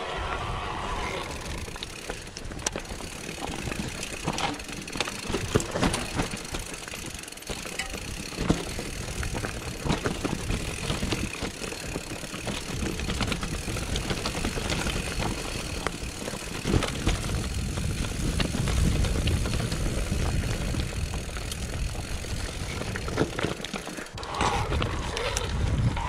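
Mountain bike descending a rocky forest singletrack: tyres running over dirt and stones, with irregular knocks and clatter from the bike over the rough ground. A low rumble grows stronger in the last several seconds.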